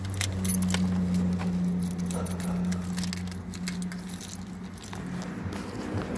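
Keys jangling and clicking, with handling noise inside a car. Under it runs a low, steady vehicle engine hum that stops in the second half.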